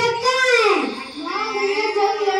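A child singing into a microphone in a high voice, holding long notes. About a second in, the voice slides down in pitch, then a new line begins.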